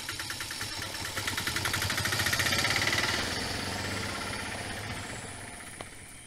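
Auto-rickshaw engine running with a rapid, even putter. It grows louder about a second in as the vehicle pulls away, then fades steadily as it drives off.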